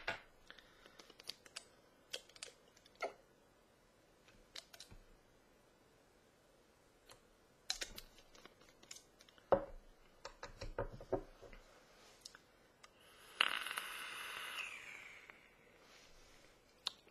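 Light clicks and taps from handling a vape mod and its atomizer while e-liquid is dripped on. About 13 seconds in comes a loud, breathy exhale of a large vapour cloud, lasting about two seconds and fading out.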